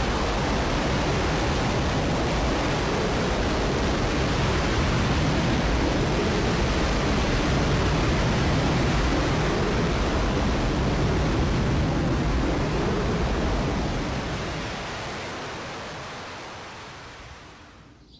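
Simulated Saturn V rocket launch sound from an augmented-reality app: steady engine noise, heaviest in the low end. It fades away over the last four seconds as the rocket climbs out of sight.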